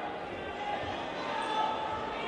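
Indistinct voices carrying in a large, echoing sports hall.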